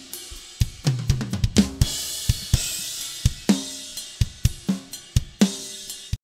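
Multitrack acoustic drum-kit beat played back: kick, snare and toms under a steady wash of hi-hat and cymbals. A quick run of tom hits comes about a second in.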